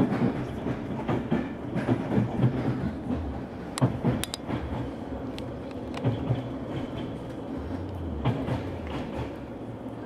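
Train running along the track, heard from on board: a steady rumble with the irregular clatter of wheels over rail joints and a few sharp metallic clicks about four seconds in.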